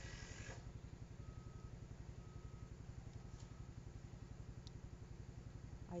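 Soil and peanut-plant foliage rustle briefly at the start, ending about half a second in, as the plant is lifted from the bin. Under it a steady low hum with a fast, even throb runs throughout, like a fan or small motor, and three faint short high tones sound about a second apart early on.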